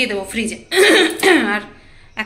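A woman's voice says one short word, then clears her throat about three-quarters of a second in, a harsh rasp lasting under a second that trails off.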